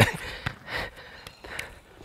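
Faint short scuffs and soft taps as a football rolls in and is stopped under a foot on artificial turf, with a few short breaths.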